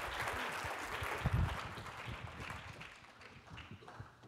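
Audience applause dying away, the clapping thinning and growing quieter over about three seconds.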